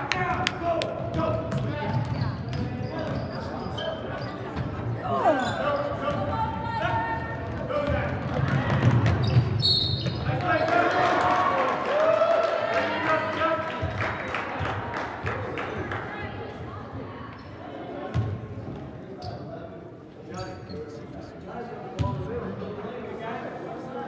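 Basketball game in a large gym, echoing: a ball bouncing on the hardwood court and shoes on the floor, over spectators' voices and shouts. A brief high whistle sounds about ten seconds in, as play stops.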